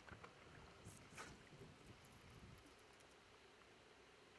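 Near silence: faint water lapping against a boat hull, with a couple of soft brief ticks about a second in.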